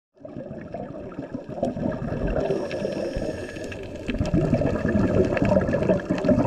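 Underwater sound of a scuba dive: an irregular low gurgling rumble of regulator bubbles and water, with scattered faint clicks, growing louder about four seconds in.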